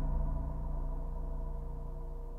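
Soundtrack music dying away: low sustained ringing tones, steadily fading.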